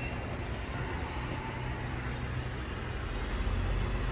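Steady low rumble of road traffic, with a constant low engine hum underneath.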